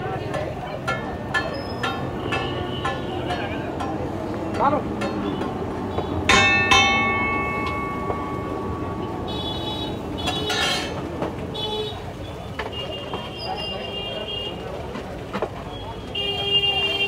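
Metal spatula striking and scraping a large flat iron griddle (tawa) while rice is stirred on it, about three strikes a second at first. A loud ringing metallic clang comes a little after six seconds, with more clanging a few seconds later.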